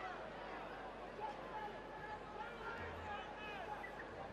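Faint rugby stadium crowd noise: a murmur of many voices with scattered distant shouts and calls.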